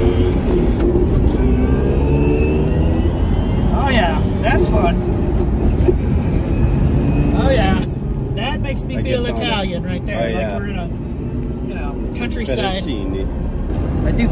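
Electric-converted Fiat X1/9 driving by: tyre and road noise with a faint whine that shifts in pitch, and no engine note. About eight seconds in, the sound turns to the quieter inside of the car, with voices over road noise.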